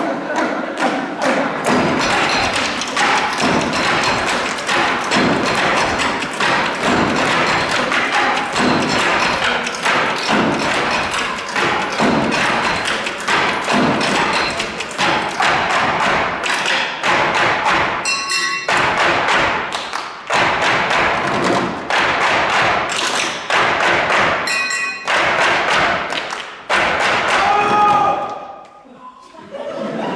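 Ensemble table percussion: many players tapping and thumping out rhythms on tabletops, dense and steady. Two brief pitched sounds cut through, one about two-thirds of the way in and one near the end.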